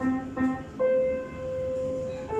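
Upright piano being played: three notes struck in quick succession, the last one held and left ringing.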